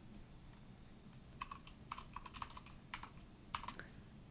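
Faint, quick, irregular clicking of keys being tapped, as in typing. It starts about a second and a half in and stops just before the end.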